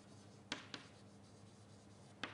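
Two short taps of writing on a board, about a quarter second apart, roughly half a second in, over near silence with a faint steady room hum.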